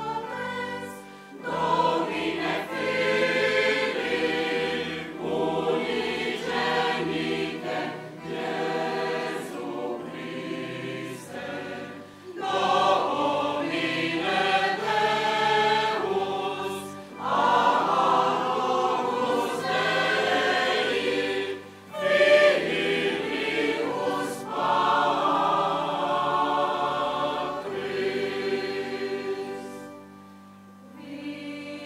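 Mixed choir of women's and men's voices singing sacred choral music, phrase after phrase with short breaks between them.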